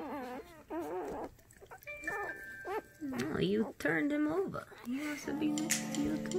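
Newborn Siberian husky puppies squealing and whimpering in a string of short, wavering cries.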